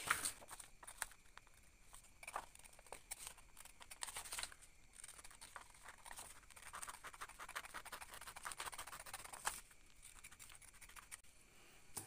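Scissors cutting out a paper sewing pattern: a faint, irregular run of short snips and scratches, with the paper rustling as it is moved.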